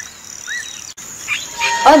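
Cricket and bird ambience: a steady high cricket trill with short rising bird chirps about every half second. The ambience cuts off abruptly about a second in and gives way to a denser cricket chorus, and a voice begins speaking near the end.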